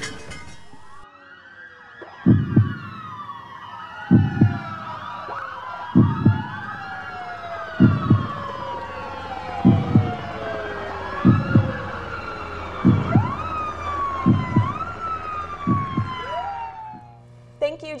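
Several emergency-vehicle sirens wailing over one another, rising and falling. Under them a slow, doubled heartbeat thump comes about every two seconds and quickens slightly toward the end. The mix cuts off about a second before the end.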